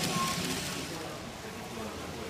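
Model freight train of container wagons running past on its track, with faint indistinct voices in the room.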